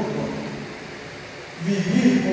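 A man speaking into a handheld microphone, amplified. His phrase trails off at the start, a pause of steady hiss follows, and speech resumes near the end.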